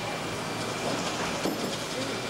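Steady rumbling background noise in a shuttle simulator cabin, with faint, muffled voices.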